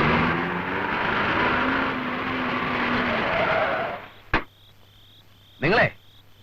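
A car driving up, its engine and tyre noise steady and then dying away about four seconds in. A single sharp knock follows shortly after.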